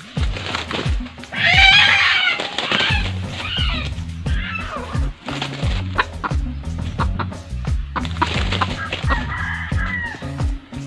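A red junglefowl rooster crows once, starting about a second in; it is the loudest sound. Background music with a steady low beat plays throughout.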